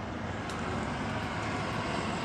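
Steady outdoor rumble of distant road traffic, with a faint tick about half a second in.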